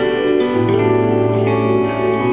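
Live band playing an instrumental passage with held chords and no singing; a low bass note comes in about half a second in.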